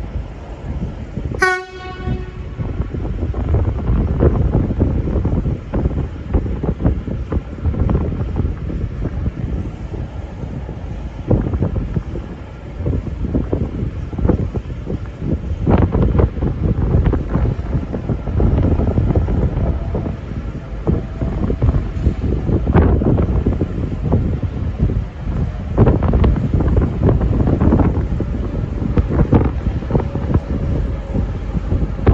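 Heavy wind buffeting the microphone over a V/Line VLocity diesel railcar slowly approaching along the platform. A short, high pitched blip sounds about a second and a half in.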